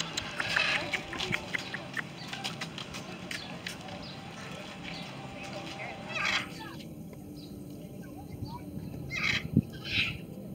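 Birds calling, with faint voices in the background. The calls come as a quick run of short, clicky chatter for the first six seconds, then thin out, with a couple of louder calls near the end.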